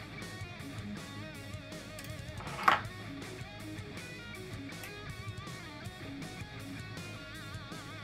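Background guitar music, with one sharp snip of wire cutters cutting a fan lead about two and a half seconds in.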